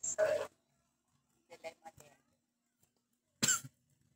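A person coughing twice, once at the start and again about three and a half seconds in, with faint voices between.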